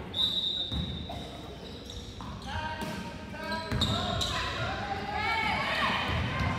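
A basketball being dribbled on a hardwood gym floor, with irregular thumps. Near the start, a long steady referee's whistle sounds for about two seconds. Players and spectators talk and call out through the second half.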